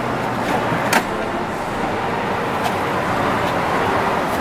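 A Humvee seat being unlatched and lifted out: one sharp click about a second in, then a few faint knocks, over a steady background rush.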